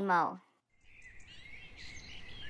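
A sung phrase ends on a falling note and cuts off. After a short silence, faint outdoor ambience with small bird chirps fades in.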